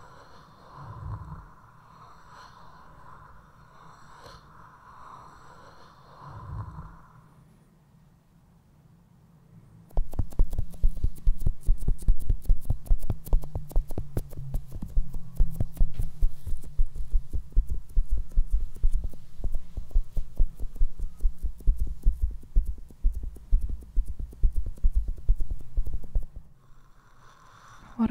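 Fingers rubbing and tapping directly on a microphone: a dense run of rapid, close, muffled strokes with deep thuds. It starts about a third of the way in and stops shortly before the end. Before that there is only a quiet steady hum and two soft low thumps.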